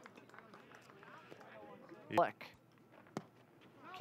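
Low ballpark ambience with faint, indistinct voices. A short, loud shouted call comes about halfway through, and a single sharp click follows about a second later.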